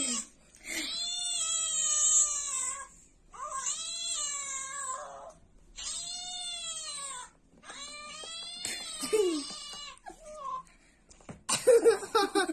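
A cat meowing in four long, drawn-out yowls, each about two seconds, rising and then falling in pitch.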